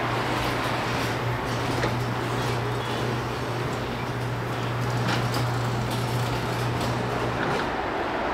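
A steady low hum over a faint rushing noise, stopping shortly before the end.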